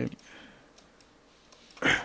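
A few faint computer mouse clicks, then a short, louder rush of noise near the end.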